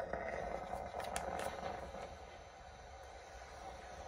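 Black+Decker steam iron hissing out steam as it is pressed down on plastic dress boning. The hiss starts suddenly, is strongest for the first second and a half, then settles to a lower steady hiss, with a couple of faint clicks about a second in.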